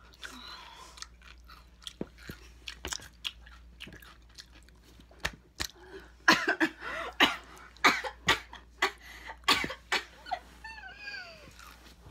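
Close-miked chewing of a pickle with the mouth working wet: many sharp crunching and smacking clicks. About halfway through comes a run of louder bursts from the mouth lasting several seconds, then a few short pitched vocal sounds.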